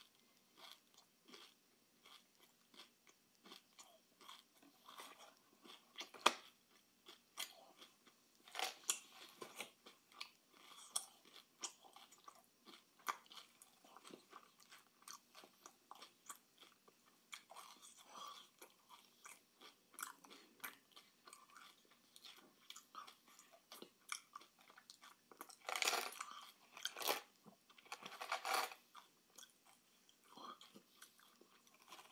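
A person chewing and crunching sweets close to the microphone: many small, irregular crunches. Louder crackly bursts come twice near the end as Reese's Pieces are tipped from their cardboard box into the mouth.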